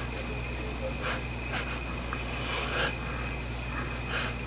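A few quiet sniffs as a person smells skincare cream held to her nose, over a steady low background hum.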